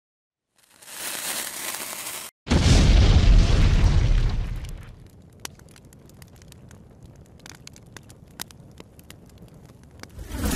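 Cinematic logo-intro sound effects: a hissing rise that cuts off abruptly at about two seconds, then a loud deep boom that fades over about two seconds, followed by faint scattered crackles.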